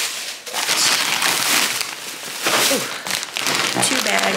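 Plastic grocery bags and snack bags rustling and crinkling loudly as groceries are pulled out and handled, in two long stretches with a brief lull near the middle.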